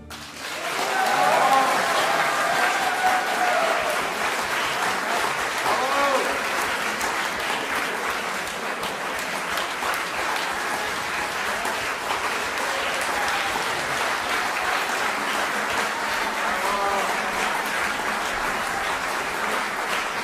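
Audience applause breaking out as the music ends, swelling within the first second or two and then continuing steadily.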